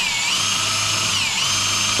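Handheld power drill running under load as a small bit bores into a metal bracket. The motor whine sags in pitch twice, once just after the start and again about a second and a half in, and rises back each time.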